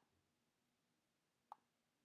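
Near silence with a single short mouse click about one and a half seconds in.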